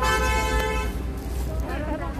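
A vehicle horn sounds once, a steady flat tone held for about a second, followed by voices.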